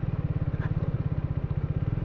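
Triumph motorcycle engine running under way, a steady, fast, even beat of exhaust pulses.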